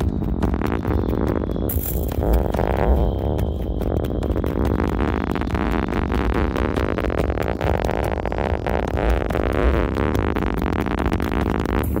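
Experimental electronic music: a dense, noisy wall of synthesized sound with heavy bass and fine crackle, swept slowly up and down about every five seconds.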